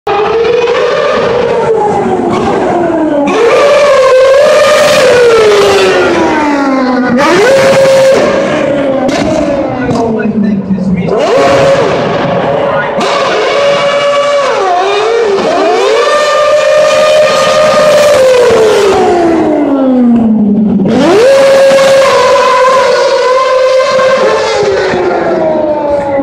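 Formula One car's engine revving hard along a city street. About five times the pitch climbs steeply, holds at a high note for a second or more, then slides down in long falls as the car accelerates, passes and slows.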